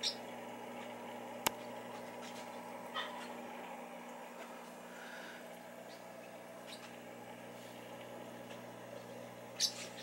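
Steady low electrical hum of running aquarium equipment, with one sharp click about one and a half seconds in.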